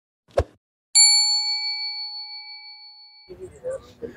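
A short click, then a single bright bell-like ding that rings on and fades over about two seconds before cutting off abruptly: an edited-in sound effect.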